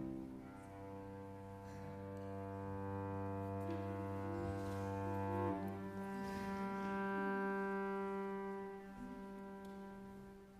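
Cello and piano playing slow, long-held notes, the cello bowing sustained tones; a low note gives way about halfway through, and the music dies away near the end.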